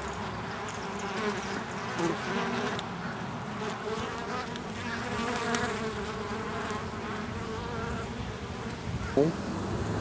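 Steady buzzing of a crowd of honey bees heard up close at the entrance of a wild colony in a tree trunk, many wingbeat tones wavering and overlapping as bees fly around.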